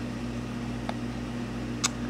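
Steady low hum of reef-aquarium pump equipment, with a few faint clicks.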